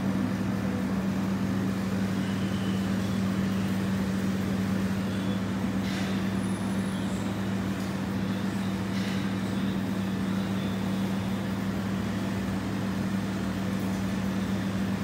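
Steady low machine hum, a constant drone with no change in pitch. Two faint short clicks come about six and nine seconds in.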